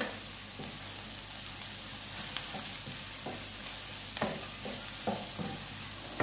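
Shredded vegetables and beef sizzling steadily in a wok while a wooden spatula stirs them, scraping and knocking against the pan several times in the second half.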